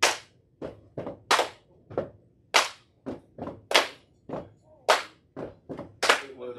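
A step team stepping: a rhythmic, unaccompanied pattern of sharp claps, body slaps and stomps, with five loud accented hits about a second and a quarter apart and lighter hits between them.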